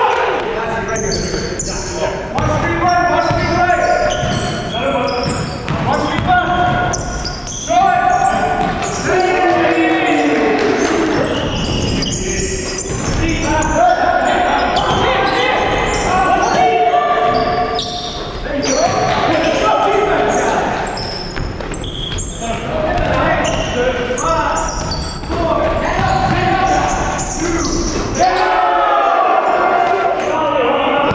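Sounds of an indoor basketball game: a ball bouncing on a wooden gym floor, with players' voices throughout.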